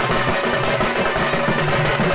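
Odia folk dance music led by a two-headed barrel drum, beaten in a fast, dense, steady rhythm.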